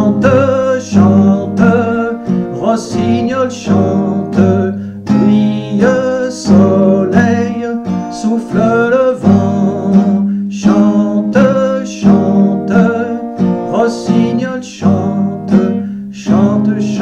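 Acoustic guitar strummed in a steady rhythm, an instrumental passage of a French chanson with no lyrics sung.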